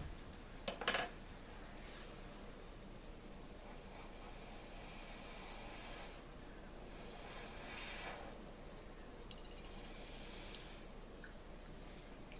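Faint blowing by mouth across wet acrylic paint on a canvas: two soft, drawn-out rushes of air, one about five seconds in and one near ten seconds in, spreading drops of white paint. A brief sound about a second in is the loudest moment.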